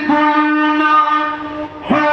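A man singing a devotional naat in long, held melodic phrases over a steady drone, with a short break in the line near the end.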